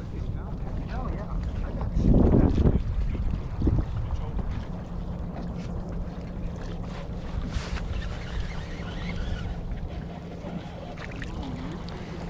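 Wind buffeting the microphone over a steady low rumble, with a louder gust about two seconds in; faint voices in the background.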